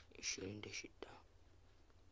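A person's voice speaking a few quiet words in the first second, then only faint steady background hum.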